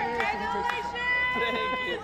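Several excited voices calling out and chattering over one another, with a few long, drawn-out high calls.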